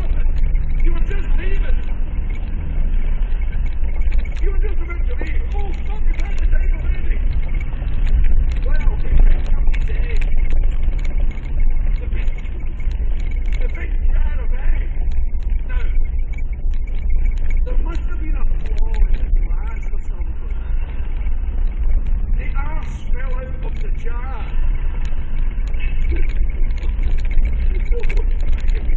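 Vehicle cabin noise while driving a bumpy gravel track: a steady low engine and road rumble with frequent short knocks and rattles from the bumps.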